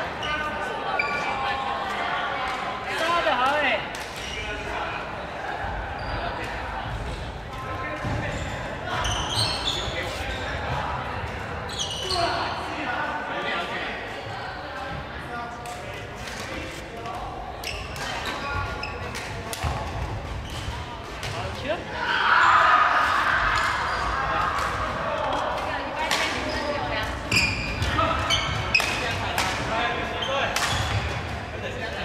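Badminton rackets hitting a shuttlecock again and again during a rally, sharp pocks echoing in a large sports hall, over voices in the hall.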